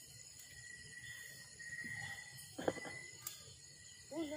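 Wood fire burning in an open fire pit: faint crackling with two sharp pops in the second half, over a steady faint high tone.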